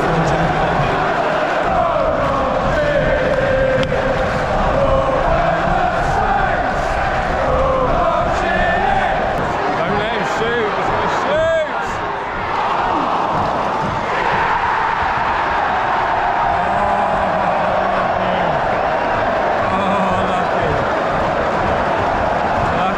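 Football crowd in the stands singing and chanting, a dense wall of many voices. A short whistle-like rising and falling tone cuts through about halfway.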